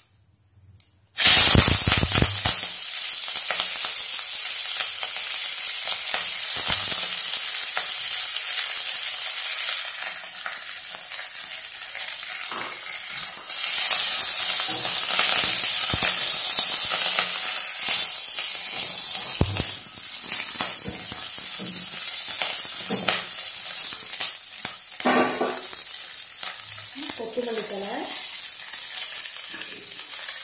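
Moringa (drumstick) leaves hitting hot oil in a nonstick pan, sizzling suddenly about a second in, then frying with a steady hiss. A spatula stirs them, with occasional short scrapes and clicks.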